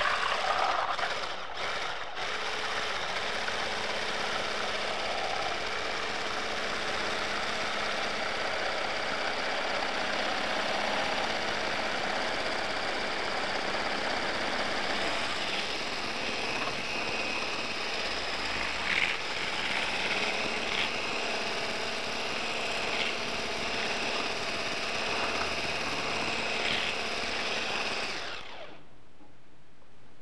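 Immersion blender with a whisk attachment running steadily as it whips heavy cream in a plastic bowl toward soft peaks, with a few brief clicks in the second half. The motor cuts off about two seconds before the end.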